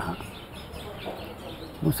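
A man's voice trails off, followed by a pause of about a second and a half filled only by faint steady outdoor background noise; his speech resumes near the end.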